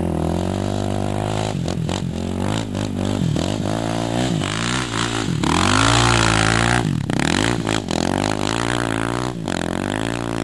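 KTM dual-sport motorcycle engine running as the bike rides across sand, loudest as it passes close by about six seconds in.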